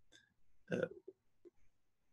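A man's single short hesitation sound, 'uh', with a few faint, brief mouth sounds around it.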